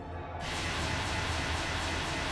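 Dramatic anime soundtrack music. About half a second in, a dense, steady rush of sound with a deep rumble swells in, like a sound-effect-heavy action cue.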